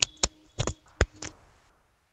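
A quick series of about five sharp clicks and knocks within the first second and a half, then quiet.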